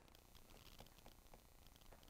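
Near silence, with faint, irregular taps of a stylus writing on a tablet screen.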